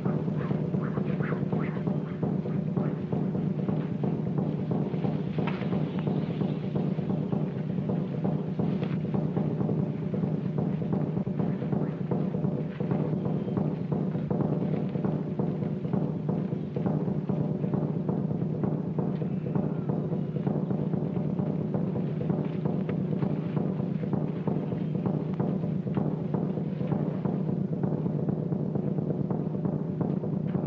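Steady, fast drumming over a low steady drone, carried on as film score music throughout.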